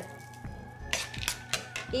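Metal spoon stirring raw pumpkin seeds in a wooden bowl, with a quick run of light clinks and rattles about a second in.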